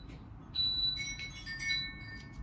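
Bright chime-like ringing notes with light clinks, starting about half a second in and ringing on to the end.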